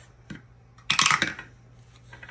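Paper dollar bills being pushed into a clear plastic envelope pocket: a short burst of crinkling plastic and paper about a second in.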